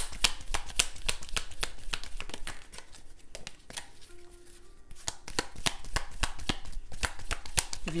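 A deck of heart-shaped oracle cards being shuffled by hand: a dense run of flicking clicks that eases off and goes quieter for about two seconds in the middle, then picks up again.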